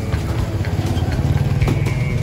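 Small motorcycle engine idling steadily close by.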